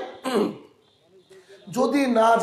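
A man's voice in a lecture: a short vocal sound about a quarter second in, then a pause of about a second, and the voice starts again near the end.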